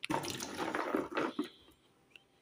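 A hand scooping wet green olives out of water in a plastic bucket: watery sloshing and dripping with the small knocks of olives against each other, dying away shortly before the end.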